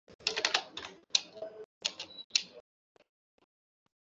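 Computer keyboard typing in three quick bursts of clicks, followed by a few faint isolated clicks near the end.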